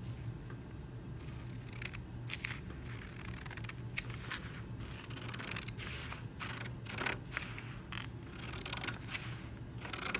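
Scissors cutting through a sheet of copy paper: a run of short, irregular snips that starts about two seconds in and goes on, over a steady low hum.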